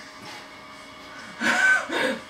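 Fairly quiet room sound, then about one and a half seconds in a short burst of a young woman's laughter.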